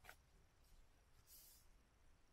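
Near silence, with two faint, brief rustles of a plastic record sleeve being handled: one at the start and one past the middle.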